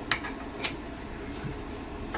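Two light clicks from hands handling the plastic helmet, one right at the start and another about half a second later, over a low steady room hum.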